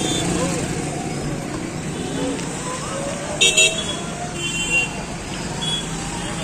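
Street traffic noise of passing motorcycles and cars. A vehicle horn gives two quick short toots about three and a half seconds in, and a fainter horn sounds about a second later.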